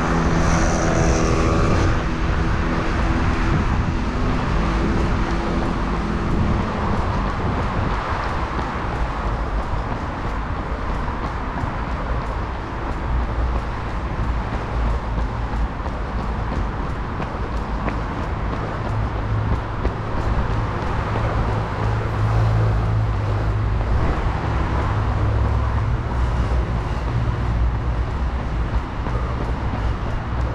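Steady city road traffic: cars running along a busy street. In the first several seconds a vehicle engine's steady hum stands out, then fades into the general traffic rumble.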